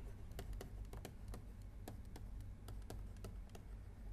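Faint, irregular clicks and taps of a stylus on a pen tablet while words are handwritten, about three a second, over a low steady hum.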